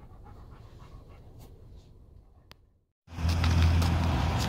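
A dog panting quickly and faintly, in a run of short, even breaths that stops just before three seconds in. Then a loud, steady low rumble starts suddenly.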